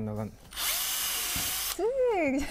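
Cordless drill spinning a metal tube that bores a hole through a block of foam: a steady rushing noise lasting about a second.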